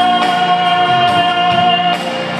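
A man singing solo into a microphone, holding one long steady note over musical accompaniment.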